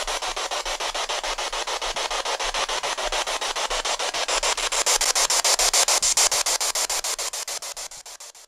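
Spirit box (a radio scanner sweeping rapidly through stations) giving out loud static chopped into short pulses about ten times a second, with no voice coming through.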